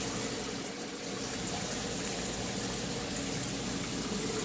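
Steady running-water and pump noise of an aquarium system, with a faint low hum under an even wash of water.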